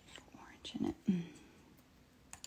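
Soft, half-whispered speech from a woman, a few words spoken quietly under her breath.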